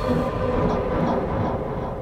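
A steady low rumbling drone with a few held tones, the dark sound-design ambience of a horror audio drama. It eases off slightly in the second half.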